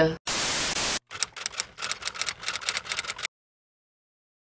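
Television-static sound effect: a short burst of steady hiss lasting under a second, followed by about two seconds of quick, irregular crackling clicks that cut off suddenly.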